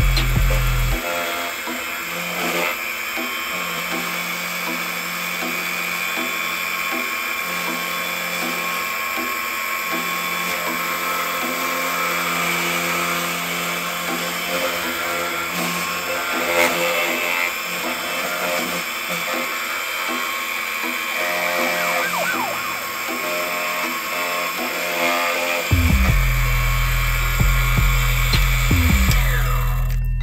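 Defu 368A key cutting machine running steadily, its spinning cutter milling a Honda HON66 laser-cut key blade as the original key is traced.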